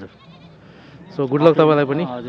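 A man's voice making a drawn-out, wavering sound about a second long, starting a little past the middle and loudest near the end.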